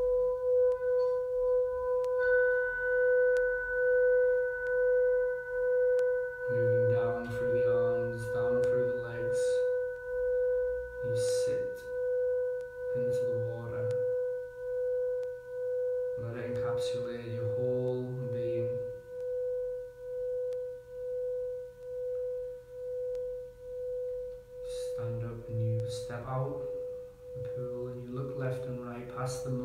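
Singing bowl ringing with one steady low tone and fainter higher overtones, wavering in loudness about once a second and slowly fading away.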